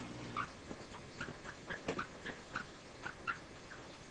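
Marker pen squeaking against a writing board in a run of about a dozen short, quick strokes as it writes.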